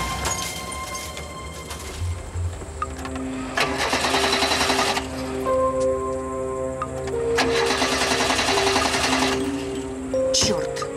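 Car starter motor cranking in two bursts of about a second and a half each, the engine not catching, over background music with sustained notes.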